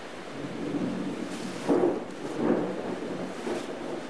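Thunder rolls in over the steady hiss of rain, building about a third of a second in and rumbling in three surges, the loudest near the middle.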